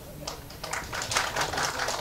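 A rapid, irregular patter of sharp clicks, starting about half a second in and growing denser.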